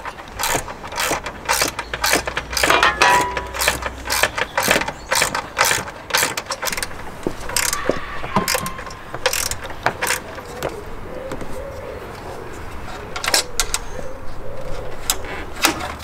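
Socket ratchet wrench clicking in runs of quick strokes, about three or four clicks a second, as a bolt is turned. The clicking thins out for a while after the middle, then picks up again.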